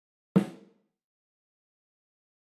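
A single snare drum hit about a third of a second in, with a short room reverb tail that dies away within about half a second. The reverb comes from an impulse response recorded with the microphones close to the sound source, so it carries a lot of direct sound.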